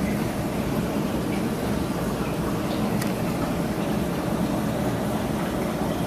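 Steady hum and water noise of a running reef aquarium system, its pumps and circulation going without change.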